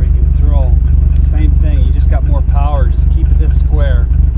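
A man talking over a loud, steady low rumble.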